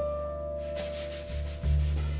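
Live jazz piano trio playing softly: a piano note struck at the start and left ringing over double bass notes, with a louder new bass note near the end. Brushes swish on the snare drum under them from partway through.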